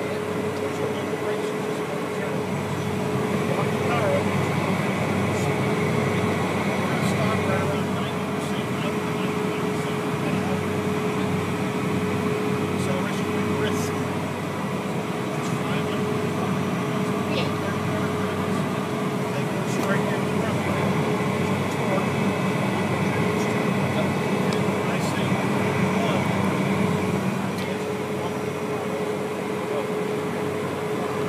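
Steady drone of a Cessna Citation business jet's engines and cabin air, heard inside the cabin, with a constant mid-pitched hum and a higher whine that swells twice.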